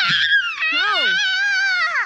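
A person's high-pitched, drawn-out wordless vocal cry: a quick rise and fall, then a long held note that slides down at the end.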